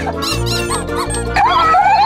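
Cheerful children's background music with high-pitched cartoon character giggles over it, in short squeaky bursts and then a lower laugh near the end.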